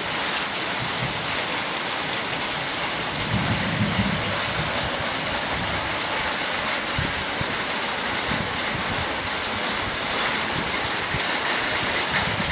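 Heavy rain falling steadily onto pavement and roofs, with a low rumble about three to four seconds in.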